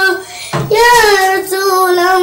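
A young boy singing a shalawat (Islamic devotional song) unaccompanied: a held note breaks off for a quick breath, then a new long, wavering note begins about half a second in.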